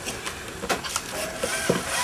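Cordless drill-driver motor starting about a second in and running with a tone that bends in pitch as it drives a screw through a perforated rubber mat into wood. A few light knocks come before it.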